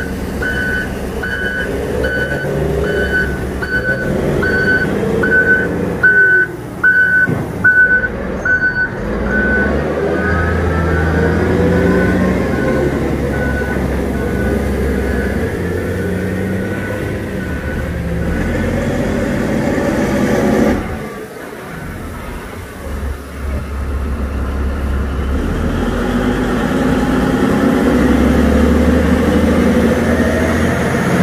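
Caterpillar 785C mining haul truck rigged as a water truck, its V12 diesel running with a deep rumble while it sprays water over the haul road, growing louder near the end as it comes close. A reversing alarm beeps steadily, somewhat more than once a second, through the first nine seconds or so, then fades out.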